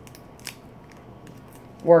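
Faint scattered ticks and crinkles of a small taped catalog-paper packet being handled in the fingers.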